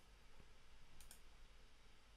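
Near silence with one faint, short click about halfway through: a computer mouse button pressed and released.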